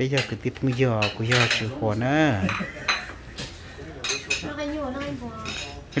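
Plates, bowls and cutlery clinking as dishes are passed and handled around a shared meal table, with people talking over it.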